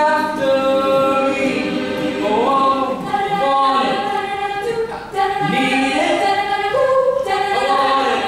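Mixed a cappella group singing: a male lead voice over sustained vocal harmonies from the ensemble, with no instruments.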